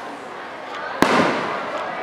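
A firework shell bursting in the sky with one sharp bang about a second in, its boom trailing off afterwards.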